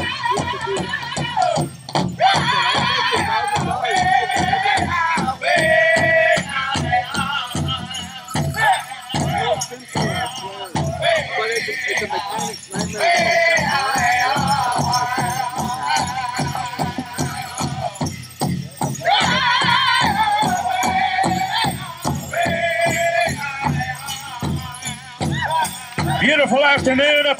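Powwow drum group performing a grand entry song: a steady, even beat struck on a big drum under high-pitched group singing in repeated phrases with short breaks, with dancers' bells jingling along.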